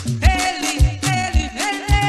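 Live band music in a rock-reggae style: a steady kick drum and bass pulse with a lead instrument holding long notes that slide up into pitch.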